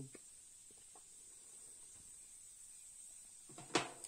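Low steady background with a few faint ticks, then one sharp, short click near the end.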